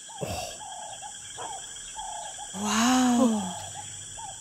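Night ambience of short chirping animal calls, then about two and a half seconds in a drawn-out, wordless voice sound of wonder, an "ooh" that rises and falls for just under a second.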